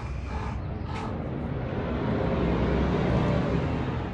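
Low rumble of a passing motor vehicle, growing louder about two seconds in and easing near the end.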